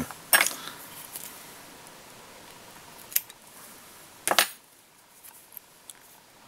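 A few short, sharp clicks from small metal fly-tying tools being handled at the vise: one just after the start, one around three seconds in, and a slightly longer one a little after four seconds.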